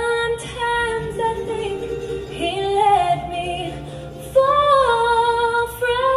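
A live bluegrass band with acoustic guitar, and a woman's voice singing long held notes that step from pitch to pitch.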